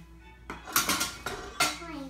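A quick series of sharp metallic clinks and clanks from a hand-held metal lemon squeezer and other metal utensils being handled on cutting boards while lemons are squeezed.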